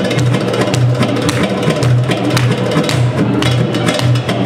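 Recorded belly dance music driven by sharp drum strokes and a low bass pulse about twice a second, with a melody over it.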